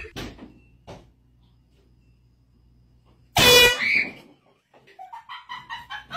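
A loud air horn blast of about half a second, a little over three seconds in, over a low steady room hum.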